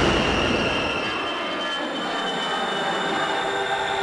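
A loud explosion's roar slowly dying away after a sudden blast, with a thin steady high whine running through it.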